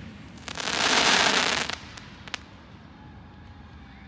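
Fireworks going off: a rush of crackling hiss lasting just over a second, starting about half a second in, followed by two sharp pops.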